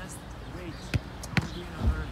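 A football thudding three times, roughly half a second apart, the last one the deepest, as balls are bounced and handled on the artificial turf. Faint voices behind.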